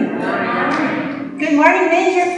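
A congregation's many voices answering together in one drawn-out, blended murmur, followed near the end by a woman's voice starting to speak again.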